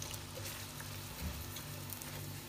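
Sliced onions frying in hot oil in a nonstick pan, giving a soft, even sizzle as they are stirred with a wooden spatula.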